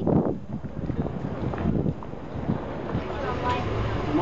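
Wind buffeting the microphone over a steady low rumble.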